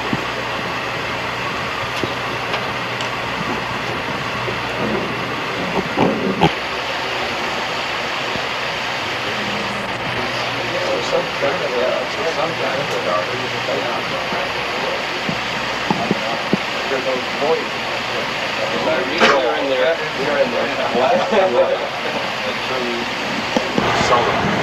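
Steady hum and hiss of a submarine control room, with indistinct voices talking in the background from about halfway through.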